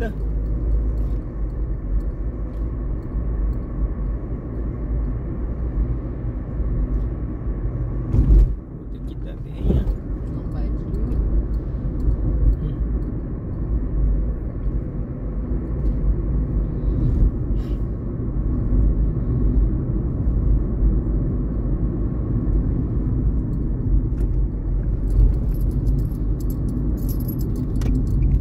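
Steady low road and engine rumble heard from inside a moving car's cabin, with one sharp thump about eight seconds in.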